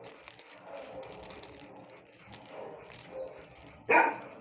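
Dog barking, fairly faint and intermittent, with one short, much louder bark near the end.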